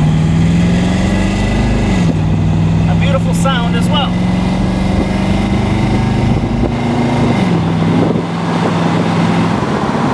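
Chevrolet ZZ4 350 small-block V8 in a 1975 Corvette accelerating, heard from inside the car. Its pitch rises under throttle and drops sharply twice, about two seconds in and again about seven and a half seconds in, as the automatic transmission shifts up. It then settles and eases off near the end.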